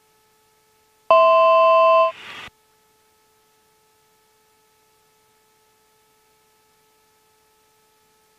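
A single electronic two-tone alert beep from a Global Express cockpit's aural warning system, lasting about a second. It sounds about a second in, and the rest is near silence.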